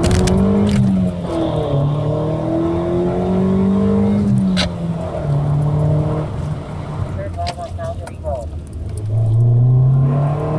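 A 1990 Acura Integra's 1.8-litre four-cylinder engine under hard acceleration through its five-speed manual, heard from inside the cabin. The revs climb and fall sharply at gear changes about a second in and again about four seconds in, then ease off and start climbing again near the end.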